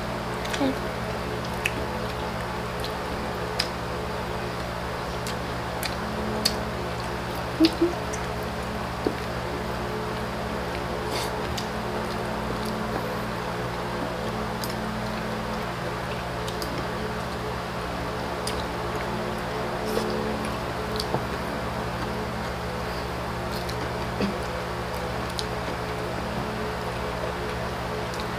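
Soft scattered clicks and smacks of people eating with their hands and a spoon, over a steady background hum. A short hummed "mm" comes about eight seconds in.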